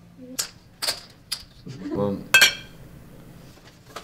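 A handful of sharp clacks and clinks of poker chips and small glasses on a card table. The loudest is a ringing glassy clink about two and a half seconds in.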